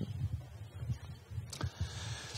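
A pause in speech: faint room tone with a low steady hum, and one brief faint click about one and a half seconds in.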